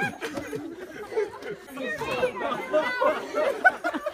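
Indistinct chatter: voices talking over one another, with no clear words.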